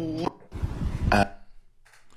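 A loud, rough burp lasting just under a second, starting about half a second in.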